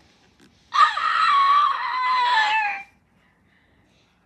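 A high-pitched scream lasting about two seconds, its pitch sliding down at the end.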